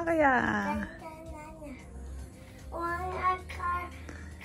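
A young child singing a short chant-like phrase: a loud swooping note that falls at the start, softer sung bits in the middle, and a few held notes near the end.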